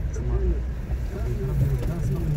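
Steady low rumble of a car driving slowly along a street, with indistinct voices over it.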